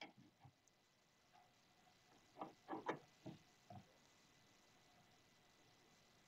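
Near silence, with a handful of faint metal clicks and taps in the middle as steel open-end spanners are set onto a stainless steel tube compression fitting to tighten it.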